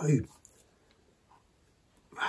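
A man's spoken word trailing off, then a pause with only quiet room tone.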